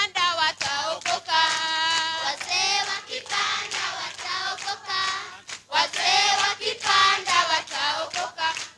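A group of children singing together in chorus, with short breaks between phrases.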